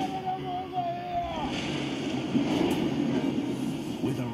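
Film sound effect of the Kraken surging up out of the sea: a loud churning rush of water with a low roar, beginning about a second and a half in, after a held wavering high note.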